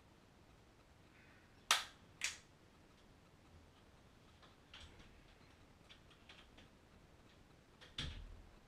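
Two sharp clicks about half a second apart, then a scatter of fainter clicks and knocks, as of small things being handled and put down.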